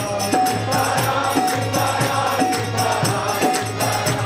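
Group of voices singing a devotional kirtan chant in chorus, with hand percussion keeping a steady beat.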